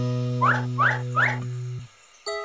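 Cartoon background music holding one sustained low chord, with three short rising squeaks about a third of a second apart. The music cuts off just before the end.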